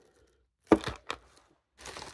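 A sharp knock followed by a smaller click, about three quarters of a second and a second in, as objects on a tabletop are handled and moved during a search.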